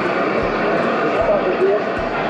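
Amateur radio transceiver's speaker giving a steady hiss of band noise while receiving, with faint voice fragments in the static.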